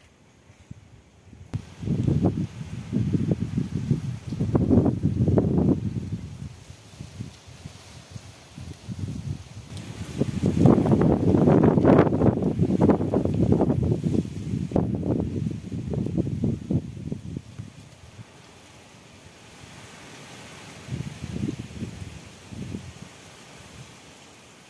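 Wind buffeting the phone's microphone in gusts, with a strong rumbling stretch early on and a longer one in the middle before it eases off near the end.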